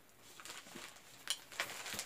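Soft rustling of a Coach denim pouch being handled, with a few small clicks, the sharpest about a second and a half in.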